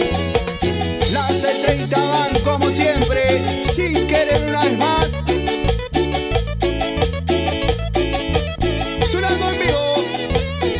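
A live Latin band playing an upbeat dance number, with electric guitar, bass, keyboard, timbales and a metal güiro scraping along in an even rhythm.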